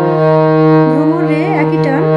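Harmonium playing held reed notes, a steady chord-like drone. From about a second in, a voice sings a wavering melody line over it.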